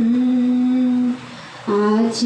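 A woman's voice singing a slow worship song: one long, steady low note, a short pause for breath just past the middle, then the next note begins near the end.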